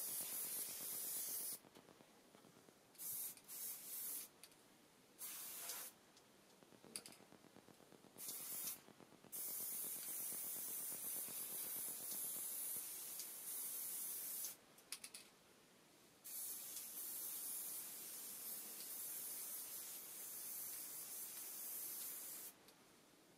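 Aerosol can of stove-blacking paint spraying, a hiss that starts and stops: several short squirts, then two long sprays of about five and six seconds with a brief break between.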